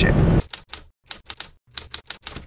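Keyboard typing sound effect: quick, irregular clicks, several a second, starting about half a second in after car noise cuts off, with a brief pause midway.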